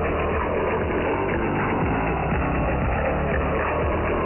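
Music from a shortwave pirate broadcast received on 3220 kHz upper sideband through a software-defined receiver, band-limited to below about 3 kHz.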